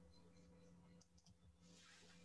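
Near silence with a few faint computer mouse clicks about a second in.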